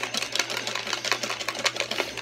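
Clear plastic box being shaken hard, the raffle pieces inside rattling in a rapid clicking clatter of roughly ten knocks a second as the entries are mixed for the draw.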